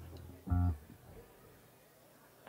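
A guitar sounds one short chord about half a second in, over the tail of a low held note. Only faint stage background follows, a pause before the next song starts.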